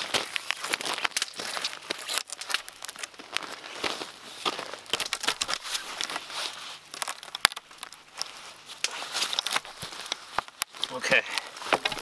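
Rustling, crinkling handling noise as paracord is pulled tight around three lashed wooden tripod poles. Boots shift on the snow and twigs throughout, with scattered crackles and a few sharper clicks.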